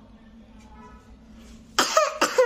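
Quiet room with a faint steady hum, then near the end a sudden loud burst from a young child's voice.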